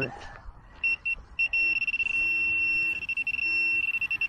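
A handheld metal-detecting pinpointer's high electronic tone, starting as a few short beeps and then sounding continuously as the probe tip sits right on a metal target in the dug soil. A fainter low tone sounds twice partway through.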